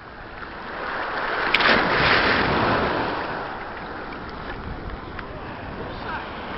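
Sea water rushing as a small wave swells past in the shallows, rising to a peak about two seconds in and fading, then a steady wash with wind hiss. A single sharp click comes about a second and a half in.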